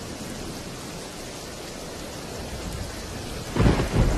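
Steady rain, then a sudden loud burst with a deep low end near the end, like a clap of thunder.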